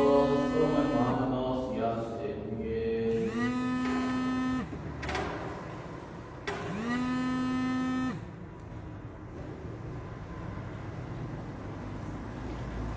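Slow church music with long held notes, each sliding up into pitch and holding for about a second; three such notes come in the first eight seconds, then only a low steady room hum is left.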